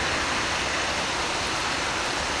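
Steady rush of river water flowing over stones, an even noise with no splashes or other events standing out.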